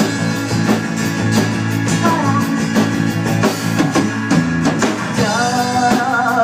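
Live rock band playing between sung lines: strummed acoustic guitar, electric bass and drum kit with regular drum hits. The female lead voice comes back in a little before the end.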